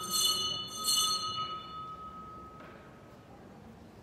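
Altar bells rung at the elevation of the chalice during the consecration: two rings about a second apart, each ringing on and fading away over the next couple of seconds.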